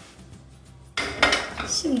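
Kitchenware clattering sharply about a second in, as a glass bowl and a silicone spatula are handled and set down.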